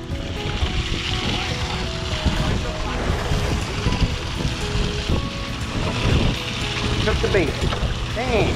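Wind and sea noise on the open deck of a party fishing boat over a low steady rumble, with faint background music in the first half and a person's voice near the end.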